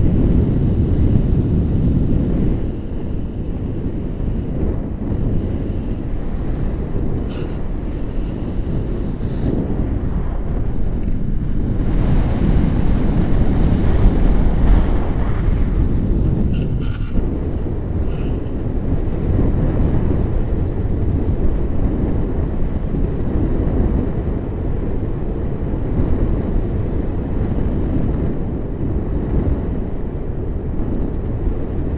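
Airflow of a paraglider in flight buffeting the action camera's microphone: a loud, steady low rumble of wind noise.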